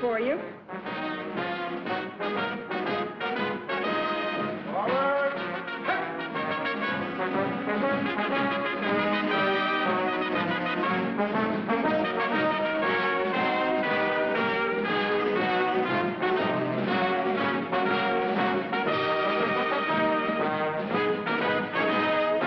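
Brass-led band music with trombones and trumpets, playing steadily, with a sliding brass swoop about five seconds in.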